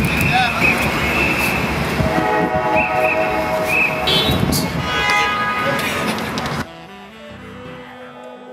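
Busy downtown street ambience: a dense wash of traffic and voices with a sustained high whistle-like tone and horn-like notes. About six and a half seconds in it cuts off suddenly to a quieter passage of held musical notes.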